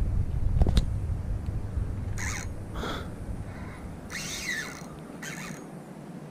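Wind rumbling on the microphone and fading away, with a sharp click near the start and a few short, high bird calls spaced about a second apart, one of them sliding down in pitch.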